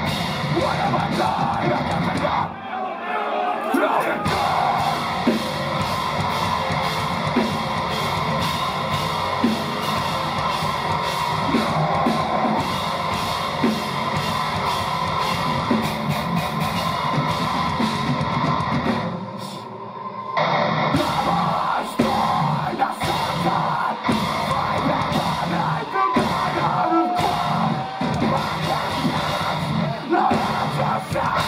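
Metalcore band playing live: distorted electric guitars, drum kit and screamed vocals, loud and dense, with two brief breaks in the heavy low end, about three seconds in and again about twenty seconds in.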